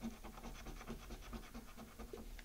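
Faint crackling and small soft ticks from a tobacco pipe being puffed.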